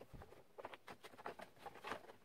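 Faint, irregular taps, clicks and scrapes of gloved hands handling a plywood box and its plastic spring clamps, the loudest just before the end.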